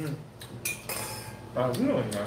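Red wine glasses clinking together in a toast, a short bright ring about half a second in.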